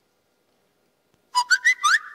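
Silence, then well over a second in a quick run of short, high, rising whistle-like chirps, ending in one held whistled note.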